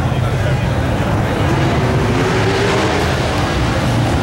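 Pro street Mopar muscle car's V8 idling, a steady, loud low exhaust rumble.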